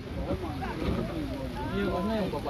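People's voices talking and calling out, several overlapping, quieter than the commentary around them.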